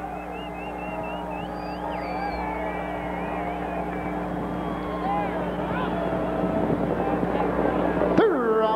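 Racetrack ambience as a harness race gets under way: distant crowd voices and a running vehicle engine over a steady hum, slowly growing louder.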